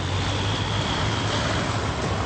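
Bulldozer demolishing stone buildings: its engine runs steadily with a low drone over a constant noisy hiss.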